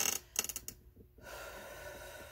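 A woman's breathing: a quick intake of breath at the start, then a long, steady exhale like a sigh beginning just over a second in.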